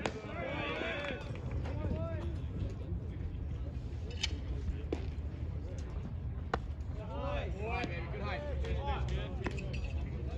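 Voices calling out on and around a baseball field, with a few sharp knocks; the loudest, about six and a half seconds in, is a pitched baseball popping into the catcher's mitt. A low steady rumble runs underneath.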